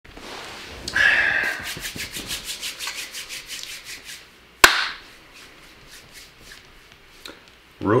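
Handling and rubbing noise as a person settles back onto a leather couch after leaning in to the camera: a rustle, then a quick run of small rubbing creaks, about six a second, that fade out. About halfway through comes one sharp click, the loudest sound.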